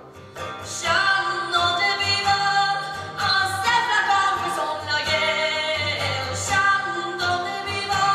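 Woman singing a traditional folk song live, her voice coming in about a second in, over strummed acoustic guitar and a large frame drum played by hand.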